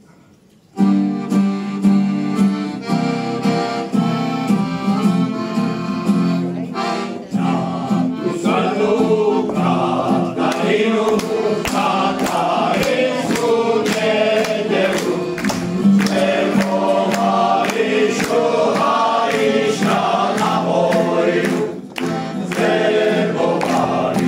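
Accordion starts suddenly about a second in with held chords, as the introduction of a song by a uniformed choral ensemble; from about eight seconds in, singing voices join over the accompaniment.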